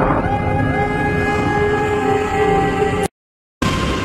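Movie trailer soundtrack: a loud chord of several held tones that slides up in pitch and then holds steady. It cuts off abruptly to silence about three seconds in, and sound comes back just before the end.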